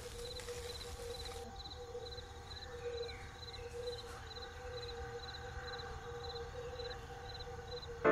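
Outdoor nature ambience: insects chirping in a regular rhythm, about two to three short chirps a second, over a faint steady drone, with a brief hiss at the start.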